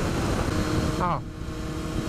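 Honda CBR954RR Fireblade's inline-four engine running at motorway speed under a heavy rush of wind, a steady drone with a low hum. The level drops slightly about a second in.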